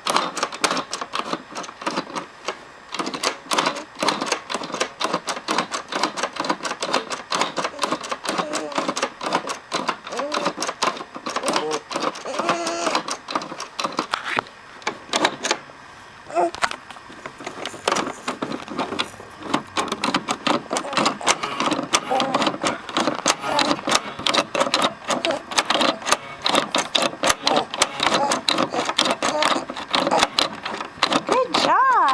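Plastic spinning lion-mane toy clicking rapidly as it is spun by hand.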